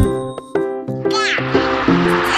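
Background music with a plucked melody; about a second in, a domestic cat gives one falling meow while its tail is being handled.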